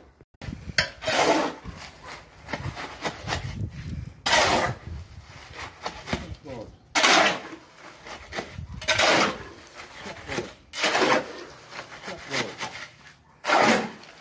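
A steel shovel scraping and scooping through a heap of gravel, sand and cement mix: six separate scrapes, each under a second, about two to three seconds apart.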